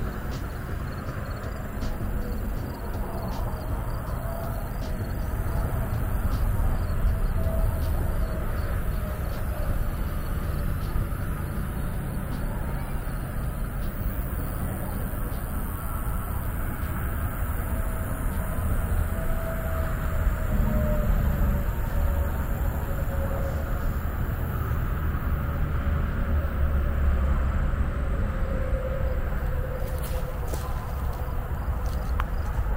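Wind buffeting the camera microphone outdoors: a steady low rumble that swells and eases slowly, louder around a third of the way in and again toward the end.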